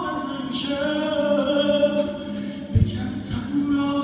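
Iranian pop band playing live: sustained chords and singing over cymbal strikes, with one strong low drum hit a little under three seconds in.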